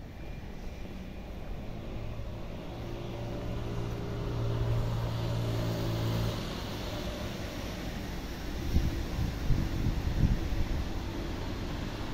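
Road traffic: a passing motor vehicle's engine hum builds over a few seconds and stops about six seconds in. Irregular low buffeting from wind on the microphone follows a little later.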